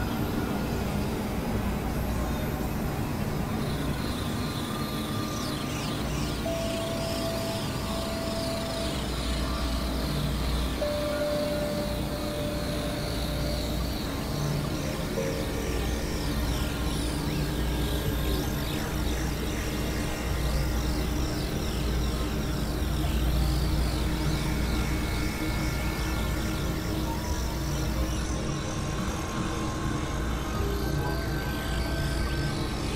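Experimental electronic drone music from synthesizers: a dense, noisy wash over a steady low rumble. Flurries of quick high chirps sweep through it twice, and a few held middle tones sound briefly near the first third.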